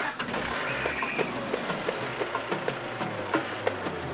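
Small pickup truck's engine running steadily at idle, with a string of short, sharp ticks over it.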